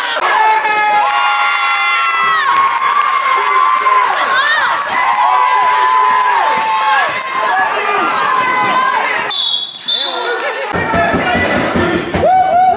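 Gym crowd yelling and cheering at a youth basketball game, many voices holding long shouts over one another. A short high whistle blast, two parts, comes about nine and a half seconds in.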